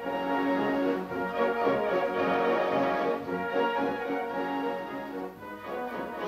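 Military marching band playing a march, with sustained brass notes throughout and a brief dip in level about five seconds in.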